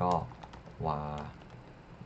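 Typing on a computer keyboard: a scattering of quick keystroke clicks, mixed in among short bursts of speech.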